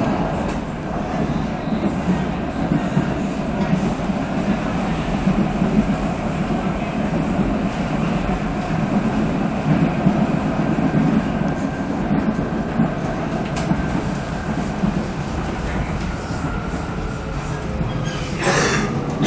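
Steady running rumble inside a Vienna U-Bahn Type V metro car travelling through a tunnel.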